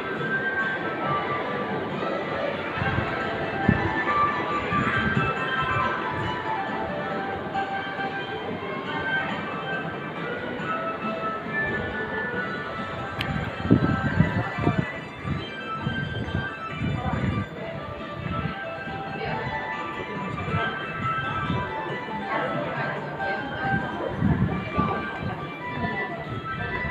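Background music mixed with indistinct chatter, with occasional low thumps, loudest about halfway through and near the end.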